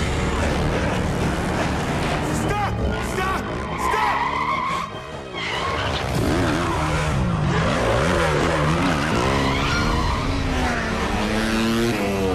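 Dirt bike engine revving hard again and again, its pitch rising and falling, with tyres skidding and a brief high screech about four seconds in, over a film music score.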